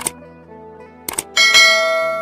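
Subscribe-button animation sound effects: a mouse click at the start, two quick clicks a little after a second in, then a bright notification-bell chime that rings out and slowly fades.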